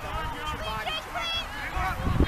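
Several voices calling and shouting across an outdoor soccer field, overlapping, with no clear words.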